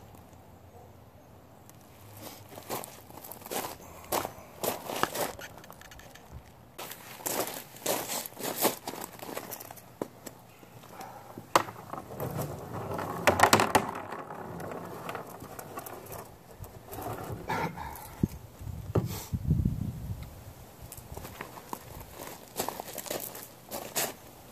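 Irregular handling noises from someone working at a plastic barrel target box on gravel: scattered clicks and knocks, rustling, and gravel crunching underfoot and under the knees. There is a louder cluster of knocks about halfway through and a dull thump a few seconds later.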